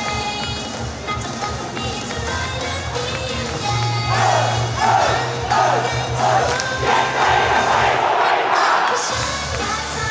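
A pop backing track plays with a steady bass line. From about four seconds in, a crowd of fans shouts a loud chant over it in short repeated bursts, which ends about a second before the music's bass comes back in near the end.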